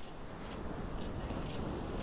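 Steady outdoor rush of wind on the microphone mixed with small waves breaking on a sandy beach at high tide.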